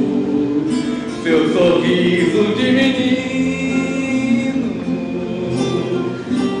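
A slow song sung with acoustic guitar accompaniment, the voice holding long notes.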